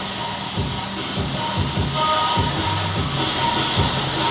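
Handheld coloured smoke flares burning with a steady hiss, over the noise of a large crowd.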